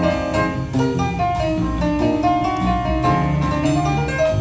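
A jazz band playing live, with piano and drum kit among the instruments; pitched notes over steady drum hits.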